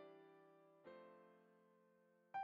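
Quiet, slow piano music: a chord struck about a second in, left to ring and fade.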